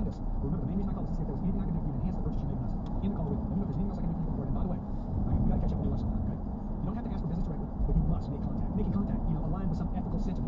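Road and engine noise inside a moving car's cabin, steady throughout, with a voice talking faintly underneath.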